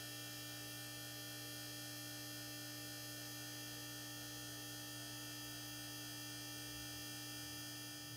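Steady low electrical hum with faint higher tones above it, unchanging in pitch and level throughout.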